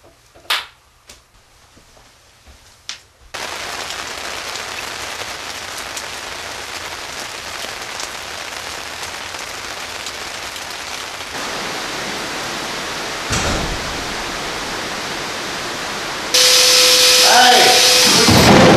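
A few quiet seconds with small clicks, then a steady outdoor hiss with no tone in it, a little louder toward the middle, with one short thump. Near the end comes a louder burst of noise with voices and a steady tone.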